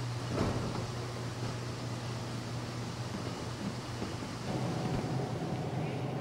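Steady low hum and rushing noise of machinery in a copper concentrate filtration plant. A faint higher steady tone joins about two-thirds of the way through.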